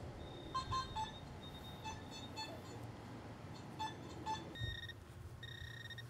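Metal detectors giving short electronic beeps at scattered moments as the coils sweep over the lawn, signalling buried metal targets. Near the end a steady high electronic tone sounds, twice held for about a second.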